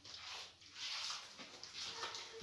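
Hands rubbing and squishing a creamy butter-and-sugar mixture around a glazed clay bowl: faint, soft swishing strokes, about three in two seconds.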